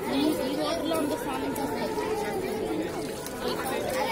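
Crowd chatter: many voices talking at once over one another, with no single speaker standing out.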